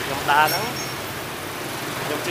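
Street traffic: motorbike and car engines running steadily under a short burst of a man's speech about half a second in.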